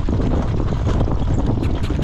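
Heavy wind rumble on the microphone of a jog cart moving behind a harness horse at speed, with the horse's hoofbeats on the dirt track coming through as a quick run of clicks, clearer near the end.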